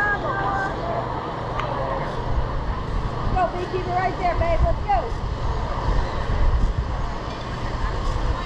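Indistinct voices calling out across a youth baseball field over a steady low rumble. The calls come near the start and again around the middle.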